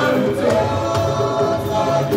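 Live juju band music with several voices singing together.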